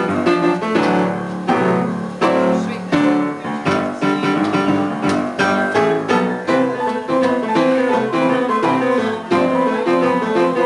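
Piano played four hands by two players at one keyboard: a rousing ragtime tune with a steady beat of chords under a busy melody.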